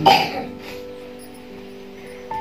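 A short cough right at the start, then soft background music of held, steady chords that change now and then.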